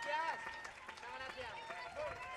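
Audience chatter: several people talking at once, with a few scattered claps.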